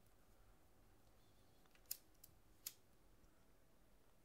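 Near silence with three faint, sharp clicks about two seconds in, the last the loudest: a hand-held lighter being struck to light it.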